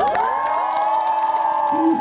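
A vocalist's long held shout, amplified through the PA during a band soundcheck, rising into pitch at the start and then held steady. Scattered sharp percussive hits sound over it.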